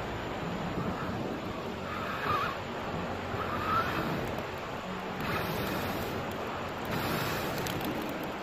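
Steady rush of a flowing river, with breathy gusts a few seconds in as a man blows into smouldering charcoal to fan the fire.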